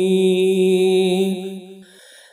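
A naat sung a cappella: one long, steady held vocal note with chant-like humming, fading away in the last half second.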